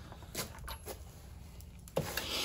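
A few faint metallic clicks and knocks as a breaker bar and socket are handled and lifted off a flywheel bolt.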